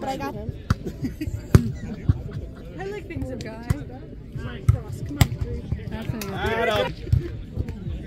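Chatter of players and onlookers with scattered sharp thuds of volleyballs being struck and bouncing across the courts; the loudest thud comes about a second and a half in.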